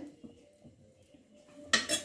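A metal ladle clinking and scraping against an earthenware curry pot, briefly, near the end after a very quiet stretch.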